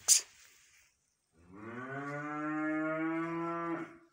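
Holstein-Friesian heifer mooing: one long, low moo that starts about a second and a half in and lasts about two and a half seconds, its pitch rising slightly at first and then holding steady. A brief sharp click comes just at the start.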